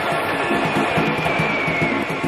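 Instrumental theme music from a mid-80s recording, with a steady beat and a high held lead note in the second half.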